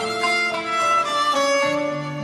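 Instrumental passage of a Turkish classical art song in makam Nihavend, led by violin, playing a melody of held notes that moves step by step between sung phrases.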